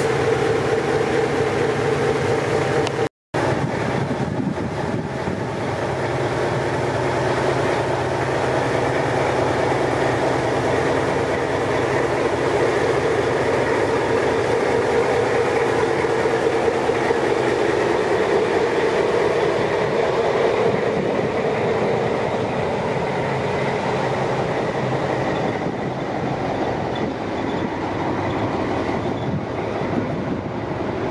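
NS 2200-class diesel-electric locomotive hauling vintage coaches slowly past: a steady diesel engine drone mixed with the clatter of wheels over rail joints. The sound drops out completely for a moment about three seconds in.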